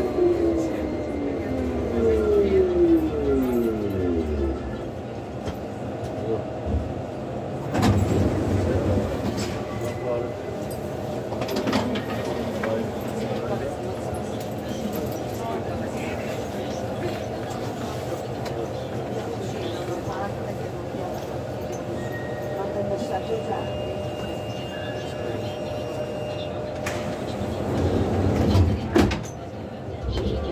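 Inside the front of a driverless VAL metro train on Turin's automatic metro line. The traction motors whine, falling in pitch through the first few seconds as the train slows, then give way to the steady rumble of the train with a few sharp knocks.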